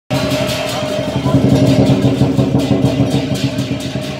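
Lion dance percussion: a large Chinese lion drum beaten in a fast, steady rhythm, with cymbal crashes about four times a second over a ringing drone.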